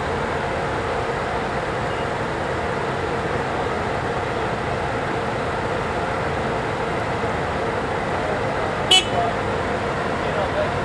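Scania L113CRL buses' diesel engines idling steadily, with one brief, sharp, high-pitched toot near the end.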